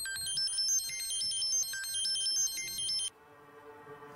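A mobile phone ringtone plays a quick, high-pitched electronic melody. It cuts off suddenly about three seconds in, when the call is answered.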